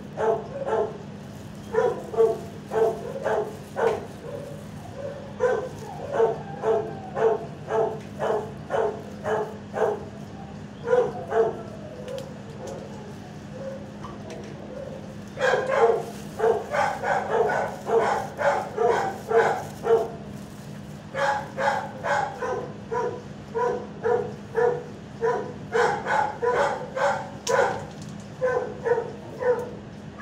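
Dogs barking over and over in a shelter kennel block, about two barks a second, easing off for a few seconds midway and then picking up again, denser and overlapping. A steady low hum runs underneath.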